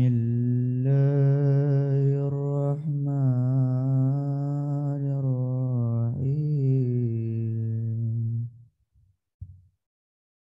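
A male voice reciting the Quran in melodic tilawah style: one long, drawn-out phrase with ornamented pitch turns, ending about eight and a half seconds in.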